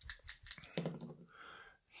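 Two small plastic dice rolled into a padded dice tray, a quick run of light clicks as they tumble against each other and settle.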